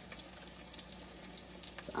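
Pork chop searing in a hot pan: a faint, steady sizzle with small scattered crackles.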